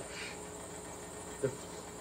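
Insects chirring steadily at a high pitch in the background, with no other sound over them for most of the pause.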